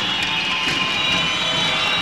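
Steady crowd noise in an indoor basketball arena during live play, with a few faint high steady tones over it.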